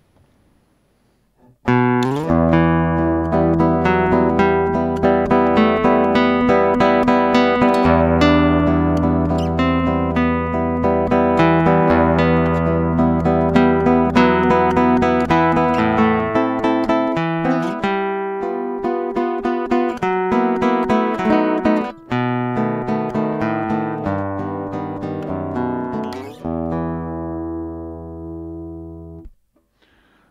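Cort AC160CFTL nylon-string classical guitar heard through its Fishman pickup straight into a line, with the pickup's EQ set flat. It plays a passage in the bass register with long, ringing low notes, beginning about two seconds in and dying away near the end.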